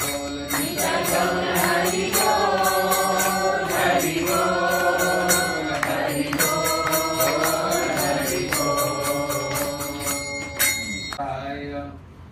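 A man singing a devotional chant into a microphone in long, held, wavering notes, over a steady rhythm of metallic jingling that stops shortly before the end.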